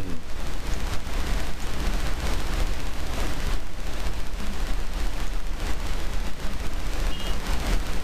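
Steady loud hiss with a low electrical hum from an open microphone's noise floor.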